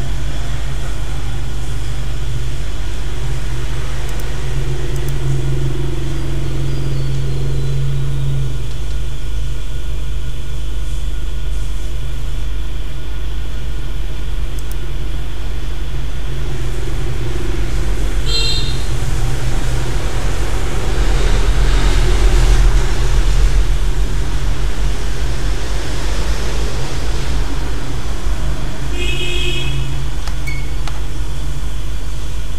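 A steady, loud low hum or rumble with no speech. It is broken twice, about two-thirds of the way in and near the end, by a brief burst of short high electronic chirps.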